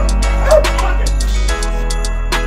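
A dog barking over background music, with the loudest bark about half a second in.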